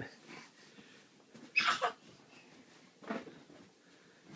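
A toddler's short wordless vocal sounds: a louder cry-like sound about a second and a half in, and a shorter, quieter one about three seconds in.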